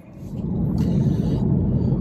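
Road noise inside a moving car: a steady low rumble of tyres and engine that swells up over the first half second and then holds.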